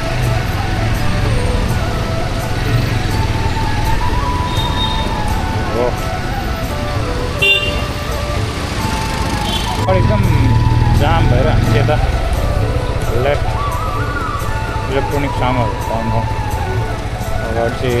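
Motorcycle running at low speed through busy street traffic, with a short horn toot about seven and a half seconds in. Music and voices from the street are heard underneath.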